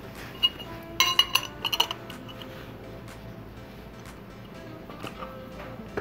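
Small metal chainring bolts and nut clinking against the aluminium chainring and crank arm as they are handled and fitted, a quick cluster of bright ringing clinks about a second in, then a few lighter taps.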